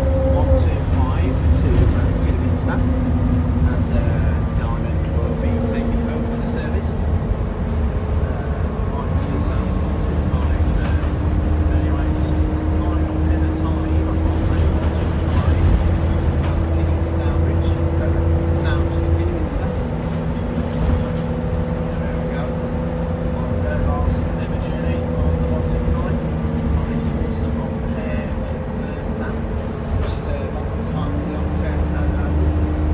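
Optare Versa single-deck bus heard from inside the saloon while driving on the road: a low drivetrain rumble with a steady whine. The whine jumps up in pitch about nine seconds in, rises slowly, and drops back about ten seconds later.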